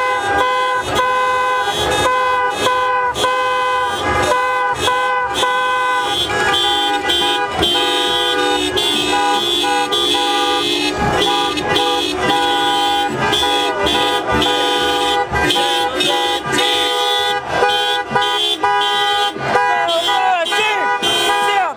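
A vehicle's musical horn playing a tune: one held note after another, several pitches sounding together, with no break.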